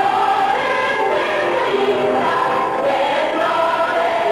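A song sung by a group of voices together with musical accompaniment, at an even loudness.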